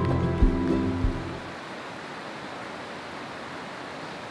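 Background music ends about a second in, leaving the steady rush of a shallow river running white over rocky rapids.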